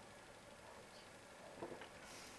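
Near silence: room tone, with one faint, brief sound about one and a half seconds in.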